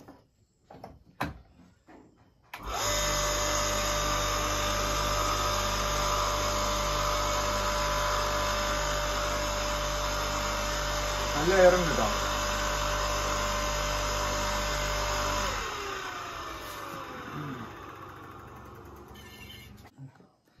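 Water pump's electric motor, converted into a forge air blower, switched on a couple of seconds in and running steadily with a hum and a rush of air from its outlet for about thirteen seconds. It is then switched off and winds down, its hum falling in pitch as it coasts to a stop.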